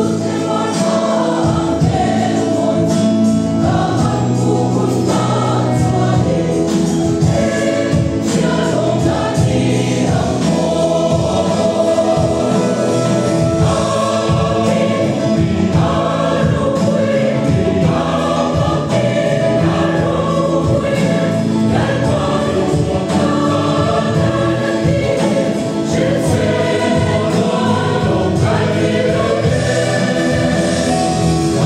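Mixed choir of women and men singing a hymn in Mizo in parts, held long notes in several voices at a steady loud level throughout.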